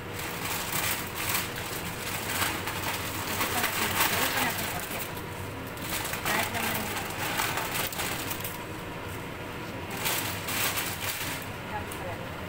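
A plastic bag crinkling and rustling over a frying pan, in irregular crackly bursts, with a quieter spell a little before the end.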